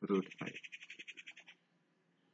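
A rapid, high chirping trill from a small animal in the background: about fifteen chirps in just over a second, fading out.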